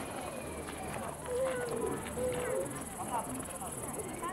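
Distant voices of people talking in the open, indistinct, over a steady high hiss.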